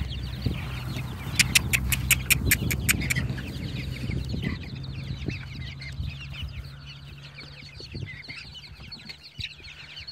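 A flock of young chickens clucking and peeping. About a second and a half in comes a quick run of about eight sharp clicks, over a low steady hum.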